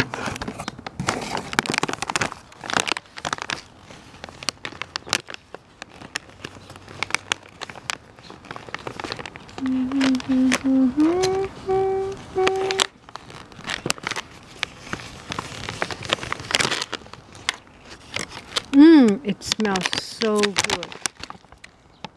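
Plastic and paper tea packaging crinkling and crackling with many sharp rustles as hands pull a large bag from a cardboard box and open it. About ten seconds in a person hums a few held notes, the last ones stepping up in pitch, and near the end there is a short wordless voiced sound.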